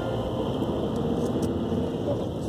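Car driving slowly, heard from inside the cabin: a steady low rumble of engine and tyres on the road.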